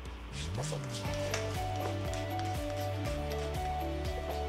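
Background music of held, changing notes.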